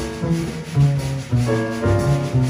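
Double bass solo in a jazz quintet: a run of plucked low notes, several a second, with a soft scraping accompaniment behind.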